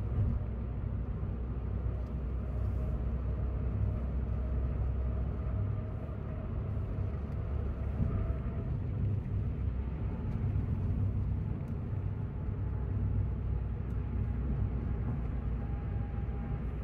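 Car driving on a country road, heard from inside the cabin: a steady low engine and road rumble with a faint whine above it.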